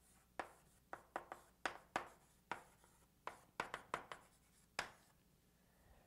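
Handwriting on a writing surface: a quick, irregular run of short faint strokes as an equation is written out, stopping about five seconds in.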